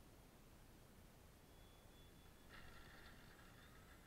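Near silence, with a faint higher-pitched sound coming in a little past halfway.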